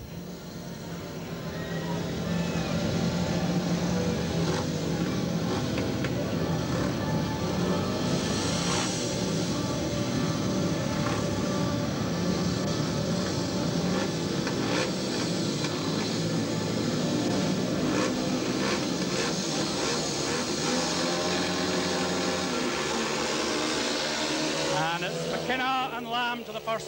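Several speedway motorcycles' 500cc single-cylinder engines running loud and revving as the riders wait at the start gate, then racing away. The sound builds over the first couple of seconds and then holds steady.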